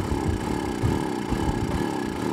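Small Honda four-stroke outboard motor running as it pushes an inflatable dinghy along. It is running rough, which the owner puts down to a blockage in the carburetor.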